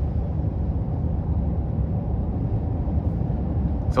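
Steady low drone inside the cab of a 2023 Honda Ridgeline at highway speed: tyre, road and engine noise from the moving truck.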